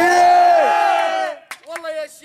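A group of men answering together in a chanted nasheed with one long, loud, held shout of about a second and a half, their voices sliding up at the start and falling away at the end. A single man's singing voice starts again near the end.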